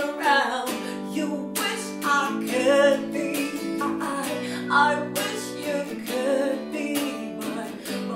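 Woman singing a slow pop-soul song, accompanied by a strummed electric guitar.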